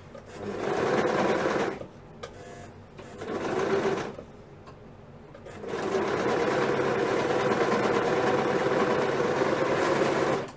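Serger (overlock machine) stitching a knit neck binding onto a t-shirt, running in three bursts: a run of about a second and a half, a shorter one about three seconds in, then a steady run of about four and a half seconds to the end.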